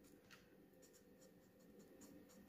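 Faint scratching of a felt-tip marker writing on paper, a few short strokes of the pen tip.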